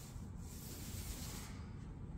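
Airless paint sprayer guns on extension poles hissing as they spray a ceiling, the hiss cutting off suddenly about one and a half seconds in, over a low steady rumble.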